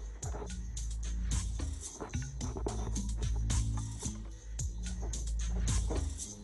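Background music with a steady beat over sustained bass notes.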